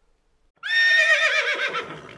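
Horse whinny sound effect: a high, wavering call that starts about half a second in, then drops in pitch and fades away.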